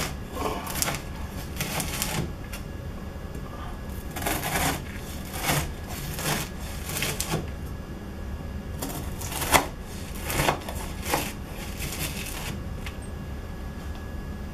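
A large kitchen knife cutting through a slab of crisped-rice cereal treats on a plastic cutting board: repeated bursts of crunching and crackling as the blade is pressed down through the slab, slice after slice, with short pauses between cuts.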